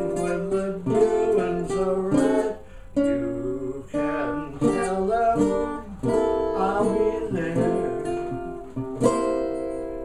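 Custom OME tenor banjo with a 12-inch head and 17-fret neck, strummed in a steady run of chords.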